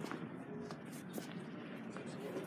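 Faint background music under low room noise, with a few soft handling clicks.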